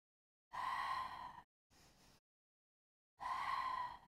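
A woman breathing hard through an exercise: two strong, slightly whistling breaths out, each about a second long, with a short, much quieter breath in between, paced to side-lying leg kicks.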